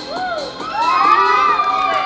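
A group of children shouting and cheering together: one short shout near the start, then many high voices rising together about half a second in and held for over a second.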